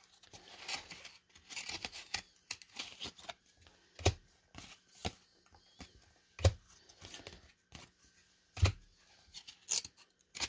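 1994 Topps baseball cards being flicked and slid one past another in the hands, a run of light scraping clicks with a few sharper snaps about four, six and a half and eight and a half seconds in.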